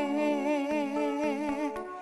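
Background film music: a wordless humming voice carrying a melody with vibrato over a steady low drone.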